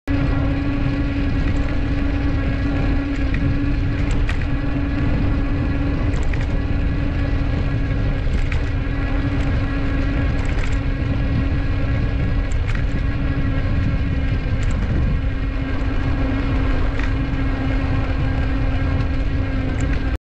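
Wind rushing over a bike-mounted GoPro's microphone while riding along a paved path, a loud, steady rumble with a constant hum running through it and occasional faint ticks.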